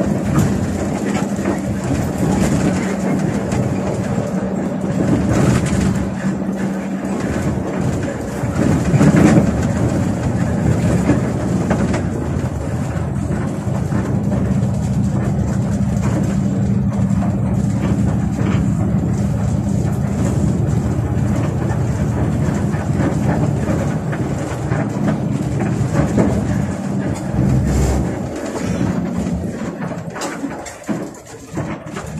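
Bus engine running steadily while the bus drives along a highway, heard inside the driver's cab as a constant drone over road noise and small rattles. The engine's tone dips for a moment about nine seconds in, then holds steady again.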